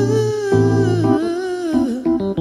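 Wordless soul vocal, a held, wavering hum-like note that dips in pitch near the end, over sustained Rhodes electric piano chords and a low bass note.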